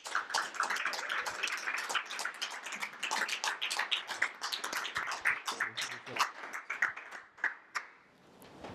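A small audience clapping, dense at first, then thinning out and stopping near the end.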